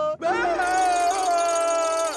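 A cartoon cat character's long, high scream, held on one note for nearly two seconds after a brief break at the start.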